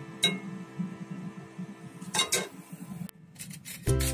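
A stainless wire strainer knocking against the metal cooking pot as boiled klepon are lifted from the water: one sharp ringing metal clink about a quarter second in, then a few duller knocks around two seconds in and near the end.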